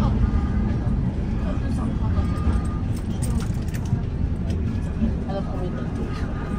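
Steady low rumble of a T1 tram running along the street, heard from inside the passenger car.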